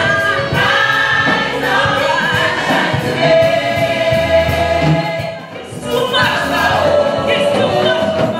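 Women's choir singing a gospel song together with a steady beat behind it; the singing dips briefly about five and a half seconds in, then comes back.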